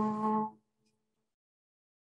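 A single long note held by a voice, which steps up once in pitch and then holds steady until it stops about half a second in.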